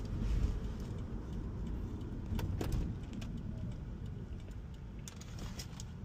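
Inside a Toyota Prius cabin: a steady low road and tyre rumble as the car slows for a left turn, with a few light clicks and rattles around the middle and again near the end.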